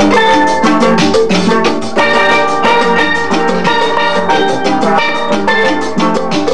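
Upbeat background music with bright pitched percussion over a quick, steady drum beat.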